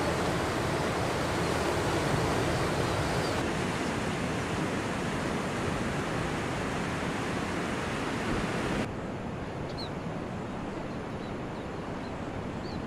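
Ocean surf breaking and washing ashore, a steady rushing noise that steps down a little about nine seconds in. A few faint high chirps come through near the end.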